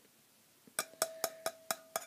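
Fingertip taps on the metal filter canister of a WW2 British civilian gas mask: about six quick taps, roughly five a second, beginning under a second in, with the canister ringing hollowly between them. The hollow sound is the owner's sign that the damaged filter is almost empty inside.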